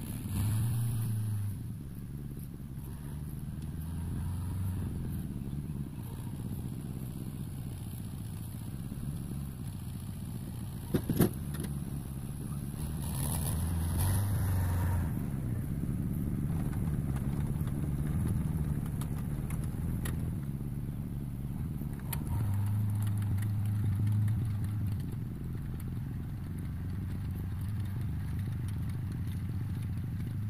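Fiat 72-93 tractor's diesel engine running steadily while it drives slowly past carrying a round hay bale on its rear feeder, louder through the middle and easing off near the end. A single sharp click sounds about eleven seconds in.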